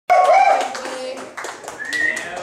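Scattered applause from a small audience, with a voice over it at the start; the sound is loudest at the opening and fades as the clapping thins out.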